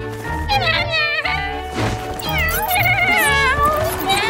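A cartoon zombie cat character's voice mewing and whining in two drawn-out, gliding cries, over a background music score with a steady bass line. A brief rushing sound falls between the two cries.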